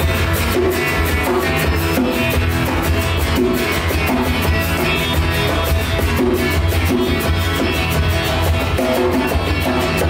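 Live acoustic-band music without vocals: electric and acoustic guitars playing over a steady hand-drum beat.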